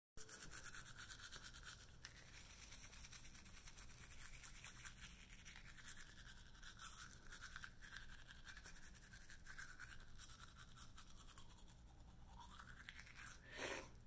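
Faint, rapid scrubbing of a manual toothbrush brushing teeth. A short rising tone and a brief louder burst come near the end.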